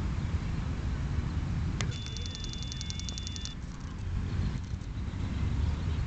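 Outdoor background noise with a steady low rumble. About two seconds in there is a short, rapid, high-pitched trill of evenly spaced pulses, lasting about a second and a half.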